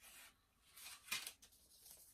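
Faint rubbing and scraping of a paperboard product box being slid open by hand, with a couple of short scrapes around the middle.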